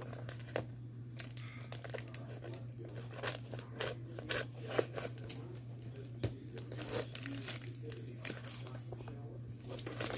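A plastic mailer bag being cut with scissors and pulled open by hand: irregular crinkling and tearing with small sharp clicks, over a steady low hum.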